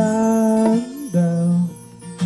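Live acoustic music: acoustic guitar with long held notes over it, a pitch that holds for about a second and then drops to a lower note, and light hand percussion.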